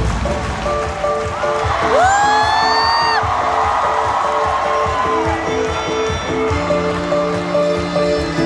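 Live acoustic band music with ukulele and violin, the deep bass dropping out at the start. About two seconds in, a fan close to the microphone lets out a loud, rising whoop held for about a second.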